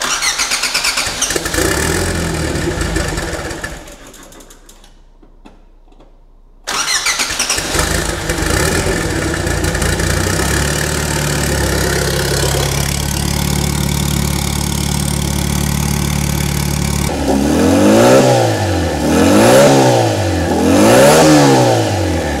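Turbocharged Škoda Felicia 1.3 pushrod four-cylinder on its first start with the turbo fitted, running on an open, unfinished exhaust. It runs briefly and goes quiet, then fires again about six and a half seconds in and idles steadily. Near the end it is revved three times, each rev rising and falling.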